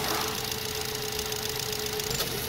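Nissan Tiida engine idling with the A/C switched on, a steady whine running over it; the A/C compressor clutch has not yet engaged.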